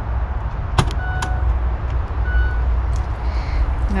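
The powered tailgate of a 2017 Mercedes C200 estate opening from the key fob: a sharp click as the latch releases about a second in, then two short electronic beeps as the tailgate lifts under its motor. A steady low rumble lies under it all.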